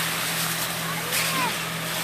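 Hazelnut vacuum harvester running: a steady rushing hiss of air drawn through the suction hose, over a constant low engine hum.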